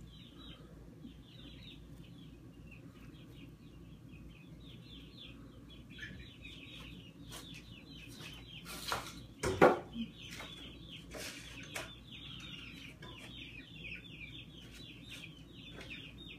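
Nestling birds giving rapid, thin, high begging chirps, several a second, with a few sharp bumps around the middle, the loudest near ten seconds in.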